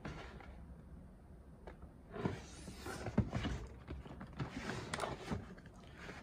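Cardboard box being handled on a desk: quiet for about two seconds, then scattered scrapes and light knocks as it is turned over and handled, with fingers working at its pull tab near the end.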